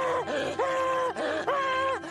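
A cartoon voice screaming in repeated drawn-out cries, about three in two seconds. Each cry rises in pitch and then holds, and the screaming cuts off sharply at the end.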